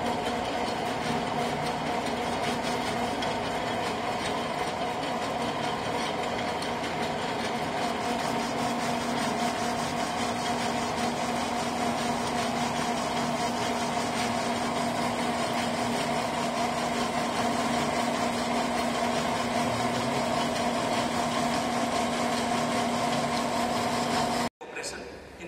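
Centre lathe running under power, turning a mild steel bar, with the cutting tool feeding along it in a straight-turning cut. It gives a steady machine hum with two even tones.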